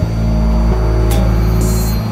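Several tracks of experimental electronic music playing over one another. A heavy low drone sets in at the start under held synth tones, with a sharp click about halfway and a short burst of hiss near the end.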